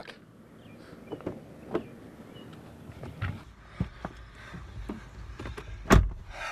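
Scattered knocks and rustling of a person getting into a parked SUV, with a low rumble of handling noise in the second half. One sharp, loud knock comes right at the end, like a car door shutting.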